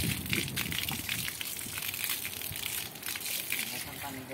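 Water from a garden hose gushing and splattering onto a wet concrete floor and into a potted plant, a steady, crackly splashing.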